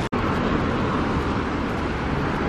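City street traffic noise: a steady noise of passing vehicles, with a brief gap just after it begins.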